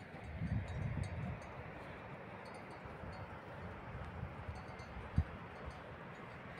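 Wind buffeting a phone's microphone in the open, a low irregular rumble with gusts in the first second and a sharp bump about five seconds in, and faint high tinkling now and then above it.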